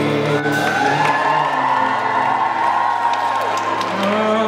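Live rock band with electric guitars and drums playing, with a long held note in the middle, and the crowd whooping and cheering over it.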